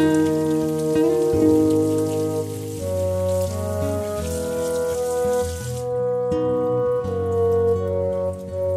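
Kitchen tap water splashing over a bell pepper as it is rinsed by hand, under louder soft background music of slow held notes; the water sound stops suddenly about six seconds in.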